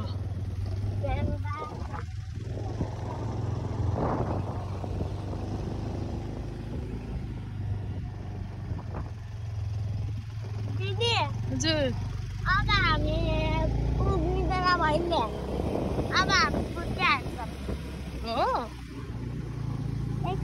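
Small motorbike engine running at a steady pace on the move, with wind rush on the microphone. From about ten seconds in, voices rising and falling in pitch come and go over it.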